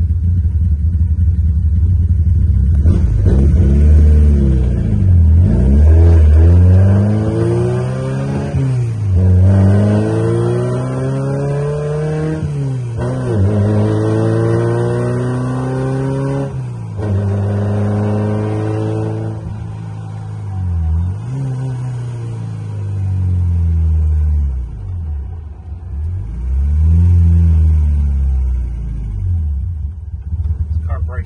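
1995 Peugeot 306 widebody rally car's engine, heard from inside the cabin. It runs steadily for the first few seconds, then accelerates through the gears. The pitch climbs and drops back at each of three upshifts, roughly every three to four seconds, then settles into lighter, varying running, with one more short rise near the end.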